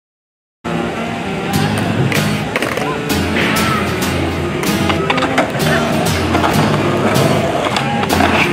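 After a brief silence, a hip-hop instrumental comes in with a steady bass line. Skateboard wheels rolling and sharp board clacks and knocks are heard over it.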